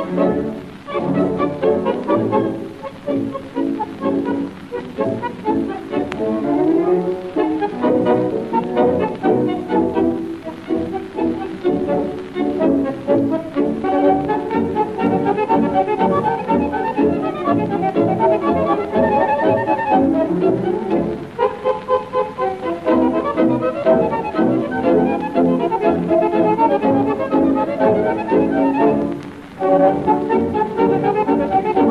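Instrumental tango music: an orchestra passage with violins and no singing, pausing briefly near the end before going on.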